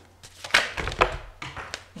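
Tarot cards being shuffled by hand, with a few quick slaps and rustles of the cards, until cards fly out of the deck onto the table.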